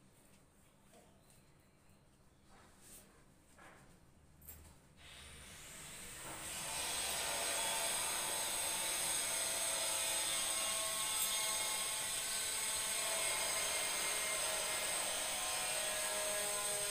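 A motor-driven machine starts up about five seconds in, rising over a second or so, then running steadily with a high whine. Before it there is only faint rubbing and light touches.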